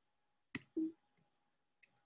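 Near silence with faint clicks: one sharp click about half a second in, followed by a brief low sound, and a softer click near the end.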